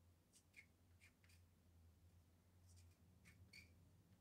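Near silence, with a handful of faint, short scratches of a thin tool on a small bisque test tile, over a low steady hum.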